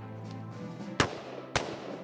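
Two shots from a black AR-style semi-automatic rifle, about a second in and half a second apart, the first the louder, over steady background music.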